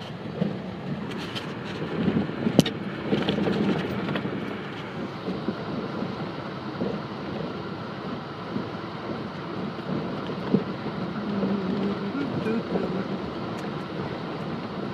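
A vehicle driving over lake ice, a steady low hum of engine and ice noise, with a single sharp knock about two and a half seconds in.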